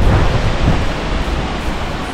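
Wind buffeting the camera microphone: a loud, uneven rushing noise, deepest at the low end.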